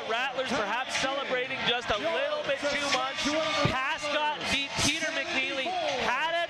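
Several excited voices talking and shouting over one another without a break, at a steady loud level.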